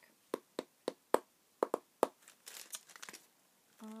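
Plastic felt-tip markers clicking and knocking against each other as they are picked through, about seven sharp clicks over two seconds, then a brief rustle.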